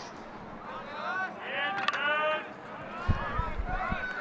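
Background voices from the ballpark crowd, people talking and calling out, picked up by the broadcast's crowd microphone. There is a sharp click about two seconds in and a few low thumps near the end.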